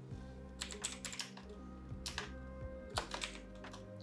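Typing on a computer keyboard: a run of irregularly spaced keystrokes, with soft background music held under it.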